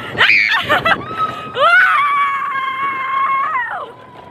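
Roller coaster riders screaming: a short scream that rises and falls, then one long scream that slides down and stops near the end.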